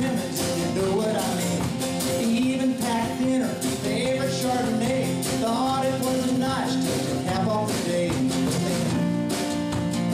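Live acoustic country band playing: strummed acoustic guitar and fiddle, with a group singing along.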